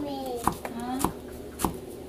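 Knife slicing green onions against a cutting board: four sharp chops about half a second apart.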